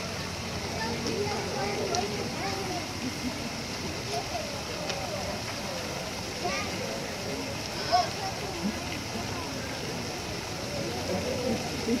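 Indistinct chatter of many onlookers over a steady background hiss, with one brief louder sound about eight seconds in.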